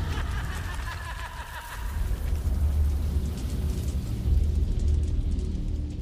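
Dramatic film soundtrack: a deep rumble under a rain-like hiss, with low held music notes coming in about halfway through.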